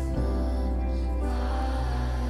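Live worship band playing a slow, soft song: held keyboard chords over a steady bass, with a voice singing a short line a little past the middle.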